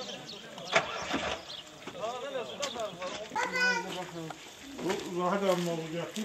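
Men's voices talking and calling out in an outdoor crowd, with one sharp click a little under a second in.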